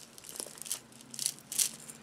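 A deck of oracle cards being shuffled by hand, the cards sliding against one another in about four short, papery swishes.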